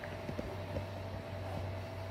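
Steady low hum and whir of an electric pedestal fan running.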